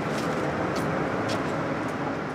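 City street traffic noise, a steady even rumble and hiss of passing vehicles, with a few faint short ticks.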